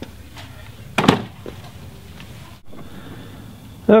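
A single sharp wooden knock about a second in, as the wooden-framed hardware-cloth rack is handled on a bench. Later a steady low hiss takes over.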